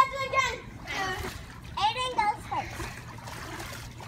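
Water splashing and sloshing in an above-ground swimming pool as children move about in it, with children's high-pitched voices calling out, loudest right at the start.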